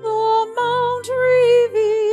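A woman singing held notes with vibrato, stepping to a new note several times.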